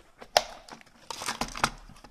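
A plastic multi-cassette album case being handled and opened on a wooden table. A sharp plastic click about a third of a second in, then about half a second of crackling and clicking as the case is pulled open.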